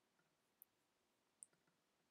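Near silence with two faint, short clicks about a second apart, from a computer mouse button.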